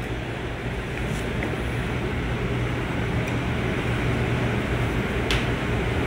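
Steady low mechanical hum under an even rushing noise, with a faint click about five seconds in.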